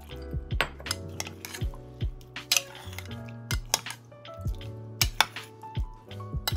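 Metal spoon clinking and scraping against a glass mixing bowl while tossing cauliflower florets, in a string of sharp clinks, with background music underneath.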